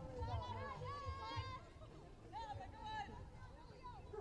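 Faint, distant voices calling and chattering, too far off to make out words, in two short stretches over a low rumble.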